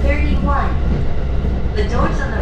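Steady low rumble of a JR Joban Line commuter train running at speed, heard from inside the carriage, with a woman's voice speaking over it, as in an on-board announcement.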